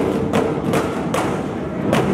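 Devotional music with a drum struck in a steady beat, about two to three strikes a second, over a sustained held tone.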